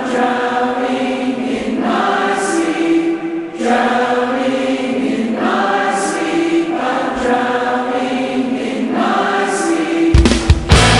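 Choir-like sustained singing in held chords within a metalcore song, moving to a new chord every second or two, with no drums or bass under it.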